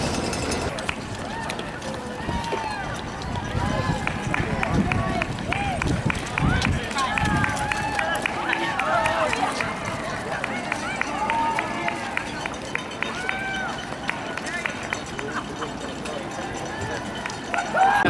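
Footsteps of many marathon runners on the road, mixed with roadside spectators' voices calling out as the runners pass.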